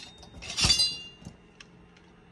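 Metal hand tools clinking together in a toolbox drawer as a plier-style hand punch is lifted out: one clatter about half a second in with a short metallic ring after it, then a couple of faint ticks.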